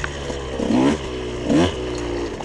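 Dirt bike engine running at low speed over rough ground, with short throttle blips that make its pitch rise and fall, one about halfway through and a sharper rise near the end.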